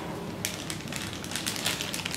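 Clear plastic bag crinkling as a bagged USB data cable is handled, a run of short irregular crackles starting about half a second in.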